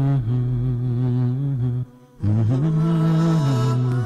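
Vocal-only intro music: a low male voice humming long held notes that step slowly in pitch, breaking off briefly about two seconds in before resuming.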